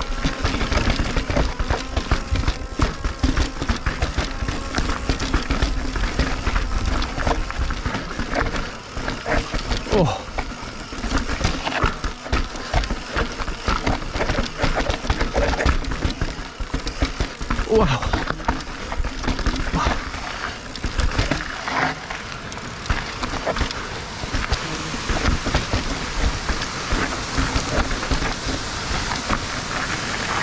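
Mountain bike descending rough, rocky ground, heard through the rider's camera mic: steady wind rush with constant rattling and knocking of tyres and bike over rocks, and a few short vocal noises from the rider.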